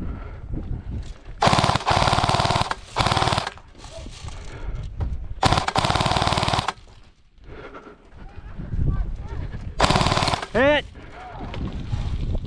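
Airsoft PKM machine gun firing four bursts of full-auto fire, a long one, a short one, another long one and a short one near the end, each a rapid mechanical rattle. A voice shouts briefly just after the last burst.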